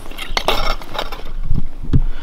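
Pieces of ice and slush clinking and crunching at an ice-fishing hole as line is pulled up by hand, with several sharp clicks among them.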